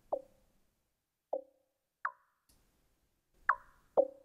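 Sparse, short plucky synth notes from Flechtwerk, a Max for Live emulation of the Mutable Instruments Plaits synth voice. Five blips at uneven spacing alternate between higher and lower pitches, each dying away quickly.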